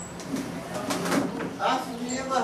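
Background sound with a dove cooing and indistinct voices, plus short high chirps.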